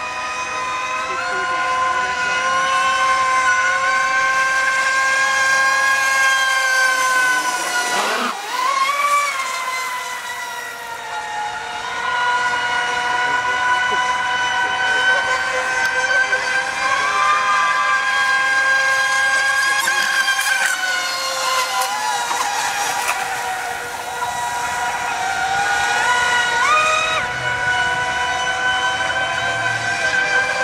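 High-pitched whine of brushless electric RC racing boats running at speed, several steady tones at once. The pitch swoops down and back up about eight seconds in as a boat passes, and steps up again near the end.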